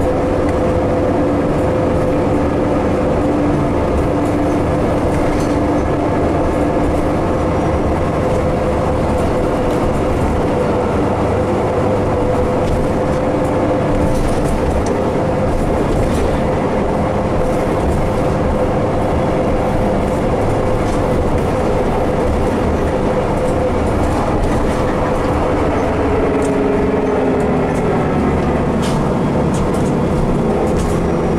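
Interior of a Nova Bus LFS city bus under way: a steady drivetrain whine over engine and road noise. The whine falls in pitch near the end.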